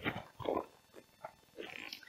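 Faint rustling and creasing of a waterproof backpack's fabric and straps as it is handled and turned over, in short bouts with a brief lull in the middle.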